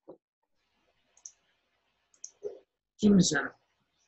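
Video-call audio that is mostly silent, with a few faint clicks, then a short burst of a voice about three seconds in.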